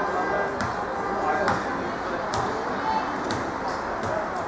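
Players and spectators shouting and calling across an outdoor football pitch, with a few short sharp knocks spread through the moment.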